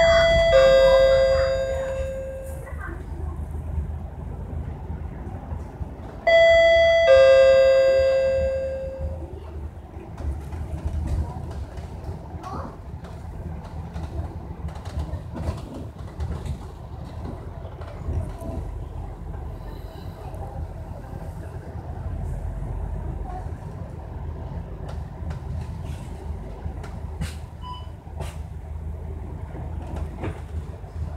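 A bus stop-request chime rings a two-note falling ding-dong twice, about six seconds apart, each note dying away over a couple of seconds. Underneath runs the steady low engine and road noise of an MAN A95 double-decker bus under way.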